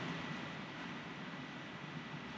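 Faint room tone: a steady low hiss with a thin, steady high whine and no distinct events.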